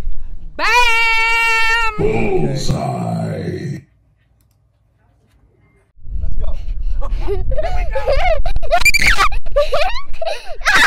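A drawn-out shout of "Bam!", held at one high pitch for over a second, then a lower, rougher sound, then about two seconds of silence. After that, people talk with wind rumbling on the microphone.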